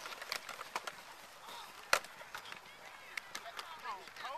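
Football helmets and shoulder pads clacking as players block on a play: a scatter of sharp knocks, the loudest about two seconds in, over faint distant voices.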